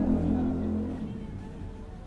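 An engine running with a steady low hum that fades away about a second in.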